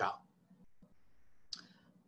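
A man's lecture pauses: his word ends at the very start, a faint quiet stretch follows, and a single short click comes about one and a half seconds in.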